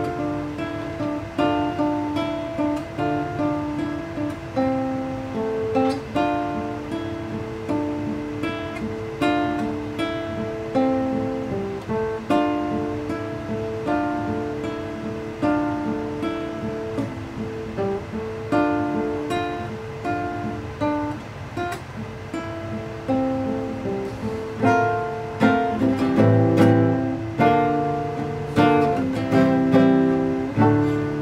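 Acoustic steel-string guitar playing a song's instrumental intro alone, picking out separate notes that ring and fade one after another. It grows louder and fuller in the bass over the last few seconds.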